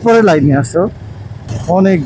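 A man talking in Bengali, with a short pause about a second in where a motorcycle's engine and street traffic carry on underneath.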